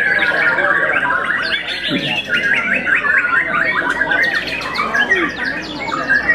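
White-rumped shama (murai batu) singing a fast, varied song of repeated whistled notes and trills, with no breaks.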